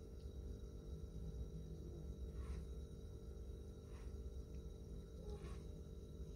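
A few faint taps of clear plastic boxes of gel polish being handled and set down on a table, over a steady low background hum.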